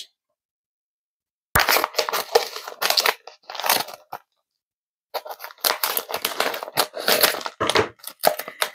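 A shiny foil poly mailer crinkling and crackling as it is handled and torn open at the top. The sound comes in two spells, starting about a second and a half in, with a brief pause in the middle.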